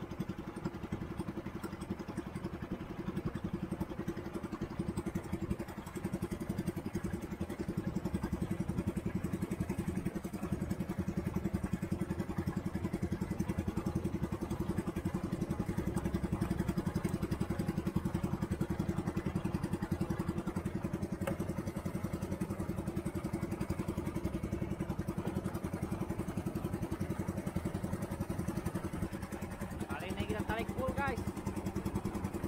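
A small fishing boat's engine running steadily under way, with the rush of water from the wake.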